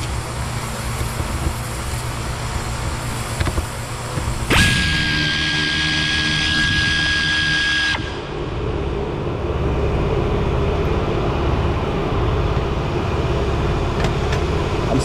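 Cordless drill/driver running at a steady high whine for about three and a half seconds, starting and stopping abruptly, as it backs out a screw inside a car's rear wheel well. A steady low rumble of background noise fills the rest.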